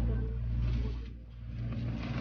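A steady low hum that dips in loudness a little past the middle.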